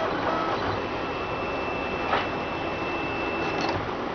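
RapidBot 2.0 3D printer running a print, its motors driving the print head over the part with a steady mechanical whirr. A thin, steady high whine comes in about a second in and stops shortly before the end, with a short tick a little after two seconds.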